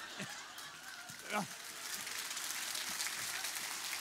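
Theatre audience applauding, the clapping filling in and growing about halfway through, with one short rising voice a little over a second in.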